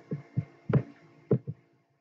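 Five or six short, soft thuds or clicks, unevenly spaced, over a faint steady low hum.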